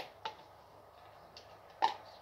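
A few soft clicks and light knocks from kitchen things being handled, over faint room tone. The loudest comes near the end.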